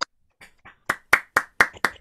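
One person's hands clapping in a steady run of separate claps. The claps are faint at first and grow louder about a second in, settling at about four claps a second.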